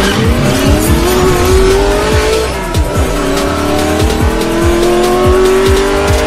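Electronic intro music with a steady beat, overlaid with a racing car engine sound effect revving up in two long rising sweeps, the second starting about halfway through after a brief drop.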